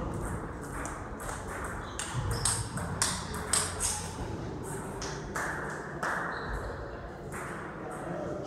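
Table tennis balls clicking against tables and bats, many sharp ticks at an irregular pace, several a second.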